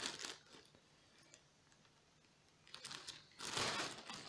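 Plastic courier mailer bag crinkling as it is handled. The crinkling dies away in the first half second, there are about two seconds of near silence, and then it comes back about three seconds in, louder near the end.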